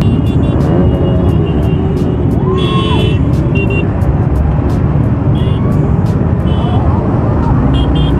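A dense pack of motorcycles, the camera bike a Royal Enfield Classic 350 with its single-cylinder engine, running at a crawl amid crowd chatter. Short high-pitched horn toots sound several times.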